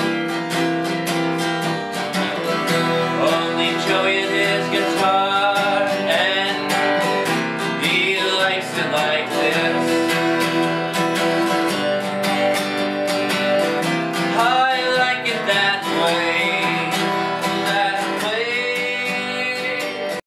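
Acoustic guitar strummed steadily in a country-punk song.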